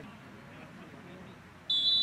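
Referee's whistle: one loud, steady, high-pitched blast starting near the end, signalling that the free kick may be taken.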